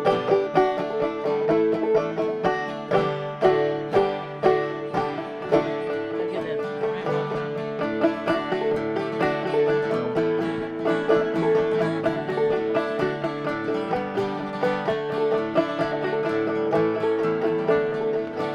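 Five-string banjo playing a fast run of plucked notes with acoustic guitar backing: an instrumental bluegrass break with no singing.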